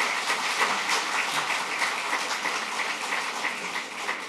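Audience applauding, a dense patter of many hands clapping that eases off near the end.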